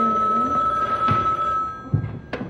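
Desk telephone ringing: one steady, high ring tone that cuts off shortly before the end.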